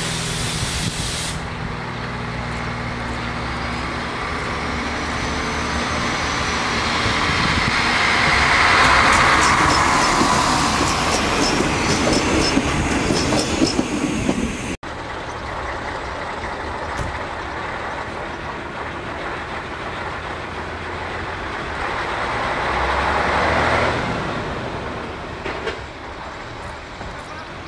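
A diesel railcar moving off through a station, its engine and wheels growing to their loudest about nine seconds in, with a whine that rises and falls and a run of clicks from the wheels. After a sudden cut, a quieter train rumble swells near the end.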